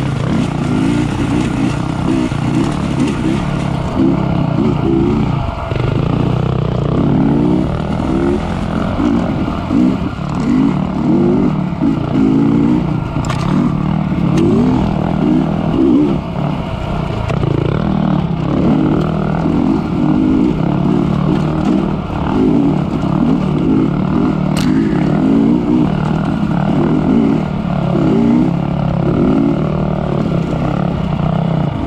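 Dirt bike engine running loud and close, revving up and down over and over as the bike is ridden along a rough sandy trail. Two sharp knocks, one near the middle and one later on.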